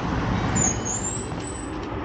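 Street traffic noise: a steady rumble of passing vehicles, with a thin high squeal from about half a second in to near the end.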